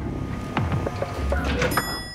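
A single bright, bell-like ding of an elevator arrival chime, ringing on from about three-quarters of the way in. Before it there is a low rumble and a faint murmur of voices.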